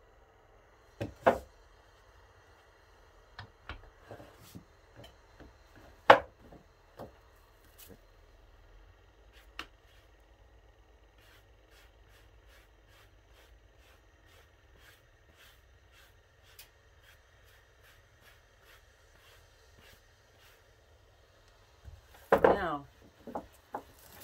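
Handling sounds of millinery work: a felt hat, pins and a wooden hat block being moved on a wooden table, with scattered knocks and clicks, the loudest about six seconds in, and a run of faint light ticks in the middle.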